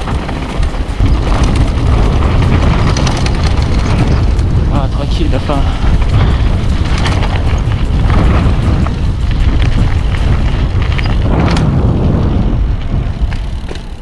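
Wind buffeting a helmet or chest-mounted action camera's microphone as a mountain bike rolls fast down a dry dirt and gravel track: a loud, steady rumble with tyre and gravel noise that eases near the end as the bike slows.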